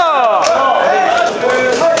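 Several men shouting "Wah!" together in a loud, rising-and-falling chorus, with a few sharp hand slaps from high-fives.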